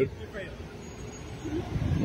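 Low rumble of a motor vehicle running close by, growing louder toward the end.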